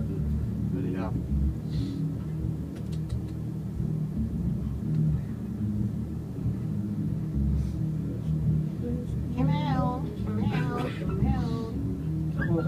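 A woman singing a few short wordless phrases with a wide vibrato into a microphone about nine to eleven seconds in, with low instrument notes sounding softly underneath throughout.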